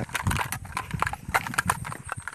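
Footsteps on a stony dirt path: a quick, irregular run of sharp crunches and knocks from shoes on loose stones and soil.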